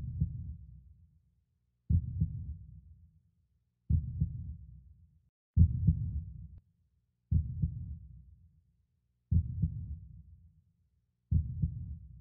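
Slow heartbeat sound effect: deep, low double thumps, about one every two seconds.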